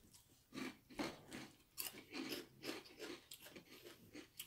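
Faint, steady crunching of crunchy corn snack chips being chewed, about two to three crunches a second.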